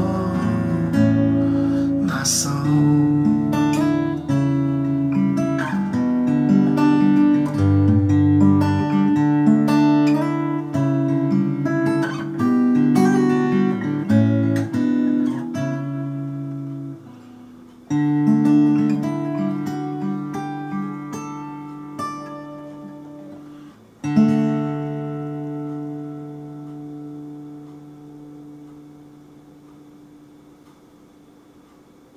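Takamine EF261S-AN acoustic-electric guitar fingerpicked in a slow closing passage, with a touch of reverb from a small amp. About 18 s in a chord is struck and left to ring. A final chord about 24 s in rings and fades away.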